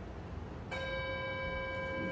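An electronic timer tone starts suddenly about two-thirds of a second in and holds at one steady pitch: the signal that the timed pose hold is over.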